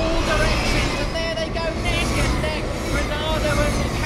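Pack of Ducati V21L electric racing motorcycles running at speed, their electric motors whining over the trackside noise.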